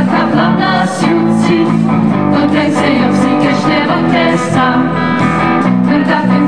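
Folk band playing live: women's voices singing together over electric guitar and bass guitar, in a song sung in the Moksha language.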